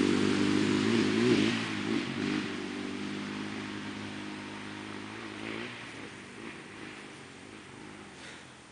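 Dirt bike engine revving, its pitch wavering early on, then fading steadily as it rides away.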